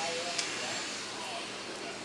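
Steady background hiss, with a faint brief voice sound at the start and a small click about half a second in.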